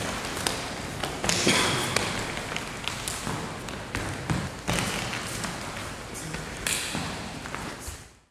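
Irregular slaps and thuds of hands and forearms meeting as two martial artists work a blocking-and-striking drill, a handful of sharp contacts a second or more apart over steady room noise.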